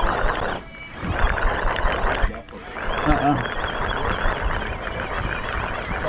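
Wind rushing over the microphone, dropping out briefly twice, with a short voice sound about three seconds in.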